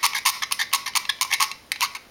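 Razor knife blade scraping the corroded metal contact inside a plastic door courtesy light switch to clean it, in quick short scratching strokes, about six a second.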